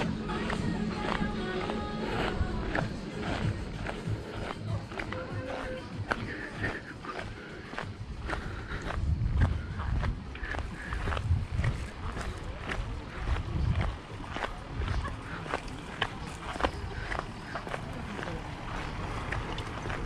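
Footsteps crunching on a gravel road at a steady walking pace, about two steps a second, with music and people's voices in the background.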